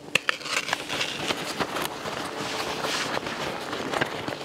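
Nylon fabric of a ski-touring backpack rustling as it is handled, with scattered sharp clicks from its straps and fittings.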